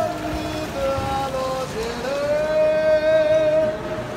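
A singing voice holding long, high, steady notes, one sustained for about two seconds in the second half, over a constant hiss of background noise.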